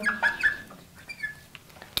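Marker squeaking on a glass lightboard while a word is written: a few short, faint high squeaks, some sliding down in pitch.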